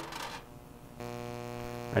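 Flex shaft motor starting about a second in and running at a steady pitch with a hum, spinning a sanding disc that is about to flatten the cut end of a silver bezel wire.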